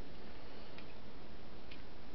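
Pen nib ticking lightly against paper during inking, twice, under a steady hiss.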